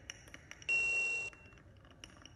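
A single short high-pitched ping, one steady tone about half a second long that starts and cuts off suddenly, leaving a brief faint ring.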